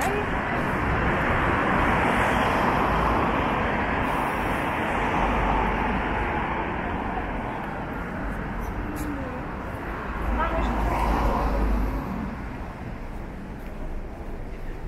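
Busy city street ambience: a steady wash of road traffic from passing cars, with low rumbles swelling about five seconds in and again about ten seconds in. Passers-by talk indistinctly underneath.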